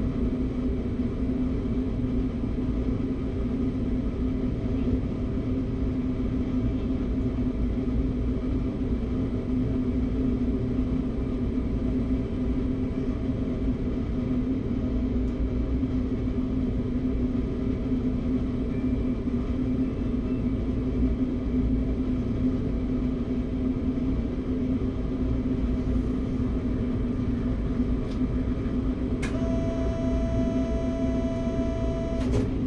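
Steady low hum and rumble of a stationary RER B electric train heard from inside its driver's cab, with one strong unchanging tone running through it. A single sharp click comes near the end.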